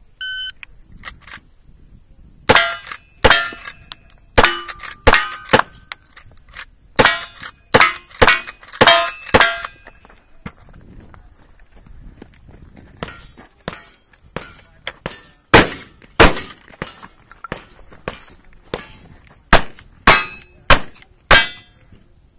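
A shot-timer beep, then a fast string of about ten lever-action rifle shots, each followed by the ring of a hit steel target. After a pause of a few seconds comes a second string of revolver shots with the steel ringing.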